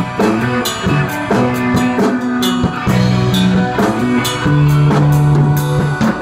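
Rock band playing live: a solid-body electric guitar over a drum kit, with held low notes shifting about once a second and regular cymbal strokes.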